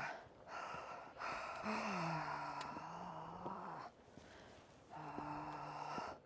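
Heavy, breathy exhalations of a worn-out hiker climbing a steep slope: three long out-breaths, the last two with a low voiced groan under them, and a short pause about four seconds in.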